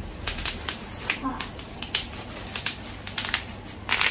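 Bubble wrap being handled and pulled from around a metal candle stand: irregular sharp crinkles and crackles of plastic.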